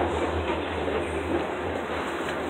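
Shopping-mall background noise: a steady low hum under an even, noisy hubbub, with no single event standing out.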